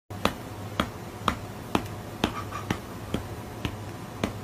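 Finger snaps in a steady rhythm, about two a second, over a low steady hum.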